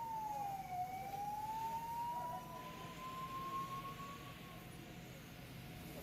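Faint emergency vehicle siren: one slow wail that dips in pitch about a second in, then climbs slowly and fades out a little before the end.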